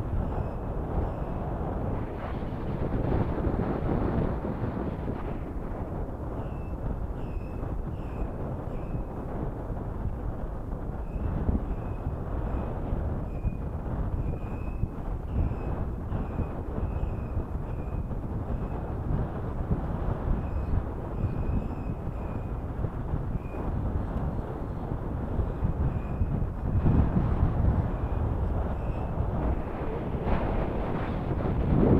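Wind buffeting the microphone over fast water running against jetty rocks, a steady low rumble. Short, high bird calls come every second or so through most of it.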